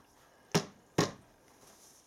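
Two sharp clicks about half a second apart as the parting tool holder and its blade are handled.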